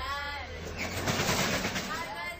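Voices of a group of people talking and calling out. About a second in, a loud rushing noise of about a second covers them.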